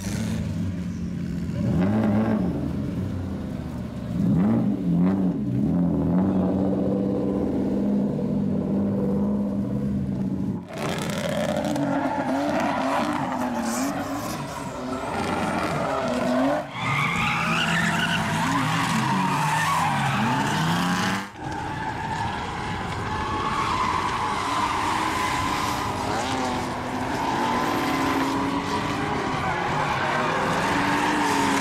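Car engines revving hard, rising and falling in pitch, with tyres squealing and skidding as cars drift on a track. The sound changes abruptly twice, about ten seconds apart, where different shots are cut together.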